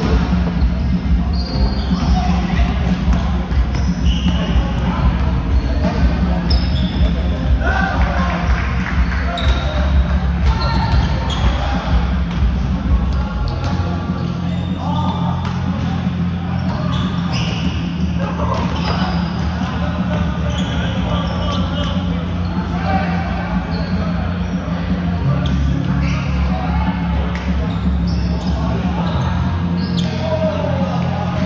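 Volleyball play in a large gym: sneakers squeak on the hardwood court, with ball hits and scattered voices in the hall. Low background music runs underneath, its bass notes changing now and then.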